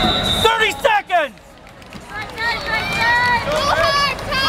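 Raised voices of spectators shouting at a freestyle wrestling match over crowd babble, with a brief lull about a second and a half in.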